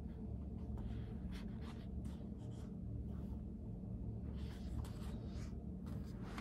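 Soft, brief rustles of paper pages being handled and a pen scratching on paper, over a steady low hum. The strokes cluster about four to five seconds in.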